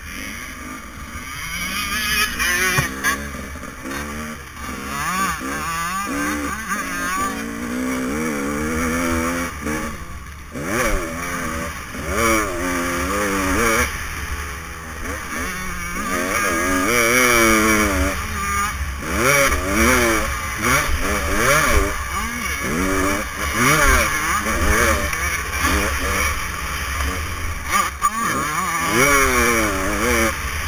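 Motocross dirt bike engine revving hard and backing off over and over, its pitch repeatedly climbing through the gears and dropping for the corners, heard from the bike itself, with scattered knocks.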